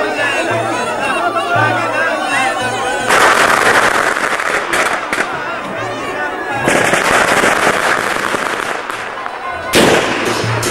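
Yemeni wedding zaffa music: a mizmar double-reed pipe plays a wavering melody over drum beats. About three seconds in, a dense burst of loud cracks breaks over the music for a few seconds, and another follows later.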